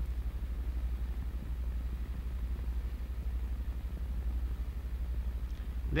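Steady low hum with a faint hiss underneath, the background noise of an old film soundtrack between narration lines.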